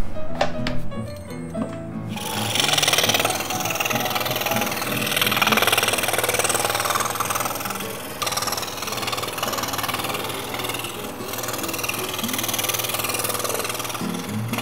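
Scroll saw running with its fine blade cutting through a wooden jigsaw puzzle board, starting about two seconds in and swelling and easing as the cut goes on, with background music underneath.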